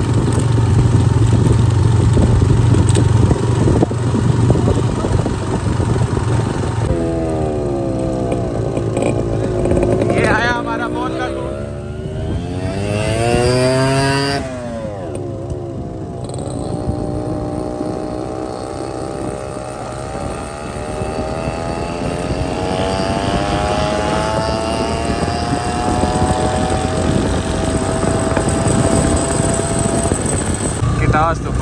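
Motorcycle engine running as the bike rides along, its pitch dipping and rising with the throttle in the middle and climbing slowly in the second half as it gathers speed.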